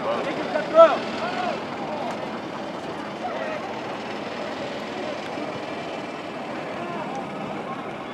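Players shouting across an outdoor soccer field during a corner kick, loudest a little under a second in, then a steady background noise with no voices.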